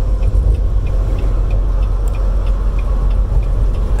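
Steady low rumble of a semi-truck's engine and road noise heard inside the cab at highway speed, with a faint regular ticking about three times a second.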